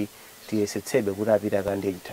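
Only a man's speaking voice, after a short pause of about half a second at the start.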